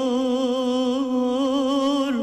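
A solo singer holding one long note with a wavering vibrato, the last line of a slow Turkish theme song, fading away at the end.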